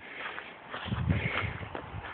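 Footsteps of a person walking outdoors while filming, with a cluster of low thuds about a second in.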